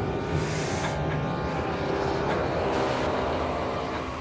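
A dense, steady rumbling drone of held low tones under a wash of noise that swells and fades at the top, with no drums or riffs standing out: a dark ambient sound bed under a sampled film scene inside an instrumental death metal track.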